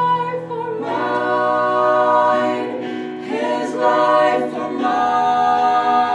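Mixed vocal trio, two female voices and one male, singing a cappella in close harmony, holding long notes and moving to new chords about a second in, around three seconds and near five seconds.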